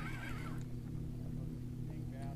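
Boat motor running steadily with a low, even hum, and a short burst of high squeaks near the start as a spinning reel is cranked against a hooked fish.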